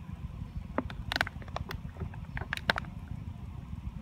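Wind noise on the microphone, with a scatter of sharp crinkles and squeaks from the first second to about three seconds in as a rubber balloon is stretched over the neck of a plastic water bottle.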